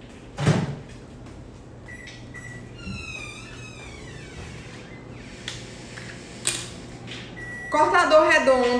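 Microwave oven door shut with a clunk and a couple of short keypad beeps, then the oven running with a steady low hum for about seven seconds. A few knocks come near the end.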